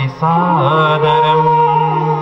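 A man chanting a Sanskrit verse in long, melodic held notes.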